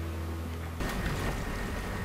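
A steady low hum that gives way abruptly, almost a second in, to the steady rumble and rush of a motorboat running across water.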